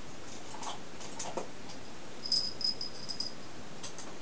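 Hand-held pistol-grip vacuum cupping pump working a clear suction cup on bare skin: a few soft clicks, then about two seconds in a quick run of short high squeaks as the trigger is pumped and air is drawn out of the cup.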